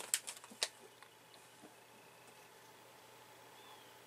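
A few quick, sharp clicks and knocks in the first second as a coffee mug is handled and picked up, then a faint quiet room background.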